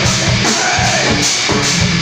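Loud live rock music with electric guitar and drum kit, played to a fast steady beat.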